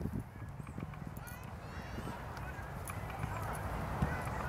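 Wind buffeting the microphone, a steady low rumble, with faint distant voices and a few faint high chirps about a second and a half in.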